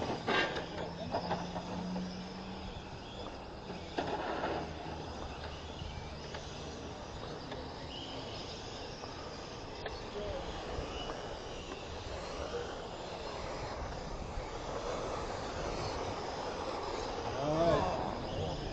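Electric RC touring cars racing on asphalt: a steady wash of small motor and gear whine with tyre noise, with a few faint rising and falling whines as cars speed up and slow down. Faint voices come and go in the background.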